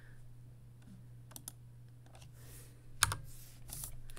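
A few scattered computer keyboard keystrokes as letters are typed into an online crossword grid. The loudest comes about three seconds in, over a steady low hum.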